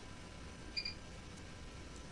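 A short pause in speech: quiet background hiss and hum, with one brief, faint high-pitched blip a little under a second in.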